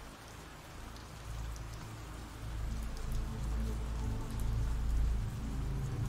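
Ambient rain sound effect, a steady patter, with low sustained music notes coming in about two seconds in and growing louder.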